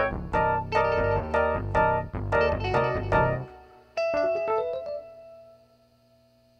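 Free-improvised jazz led by electric piano: repeated struck chords over a low bass line that stops about halfway through, then a quick falling run of notes and a single held note that fades almost to silence near the end.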